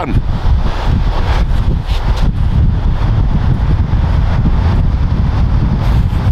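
Wind buffeting the camera's microphone on an open beach, a loud, steady rumble.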